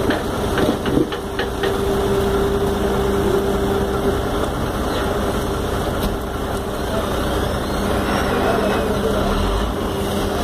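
Heavy diesel engine of construction machinery idling steadily, with a few light knocks about a second in.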